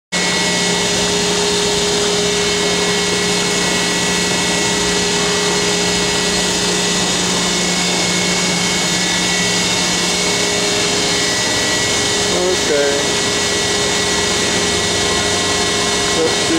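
Brausse PE 102-50 die cutter running: a steady mechanical hum with a few constant tones that does not change.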